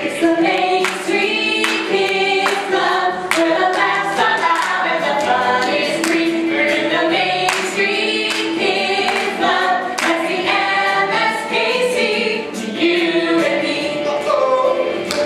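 A small cast of men and women singing a bright musical-theatre song together, with a steady beat behind the voices.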